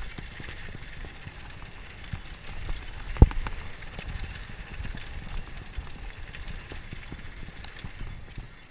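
Mountain bike running fast down a packed-dirt trail: tyre noise and the bike rattling over bumps, with one sharp knock about three seconds in, and wind rushing over the camera microphone.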